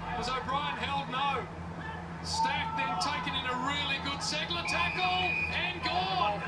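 A man's voice commentating Australian rules football play from the match broadcast, talking continuously and quieter than the voice in the room, over a steady low hum.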